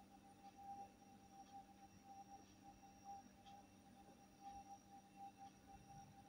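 Near silence, with a faint steady tone held without change.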